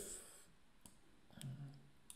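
Two faint, single clicks of a computer mouse as an activity is picked up and dragged in a desktop program, with a short low murmur of a voice near the end.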